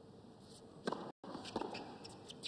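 Faint tennis-court ambience, with sharp knocks of the tennis ball about a second in and again half a second later.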